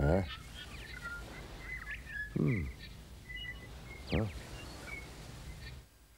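Cartoon jungle ambience of small birds chirping, broken by three separate vocal calls that each slide steeply down in pitch, about two seconds apart.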